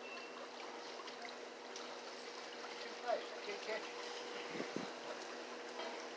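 Faint outdoor background: a steady low hum, with a few short chirps and small scattered rustles and knocks.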